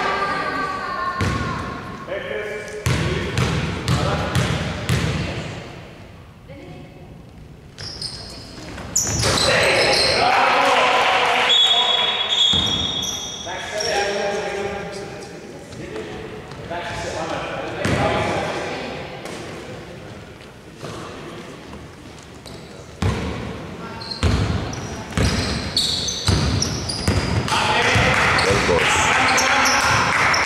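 Basketball bouncing on a hardwood court in a large gym hall, with players' voices calling out in the background.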